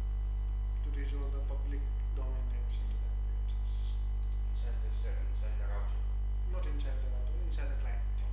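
Steady low electrical hum on the recording, with a thin high-pitched whine above it. Faint, indistinct voices come and go underneath.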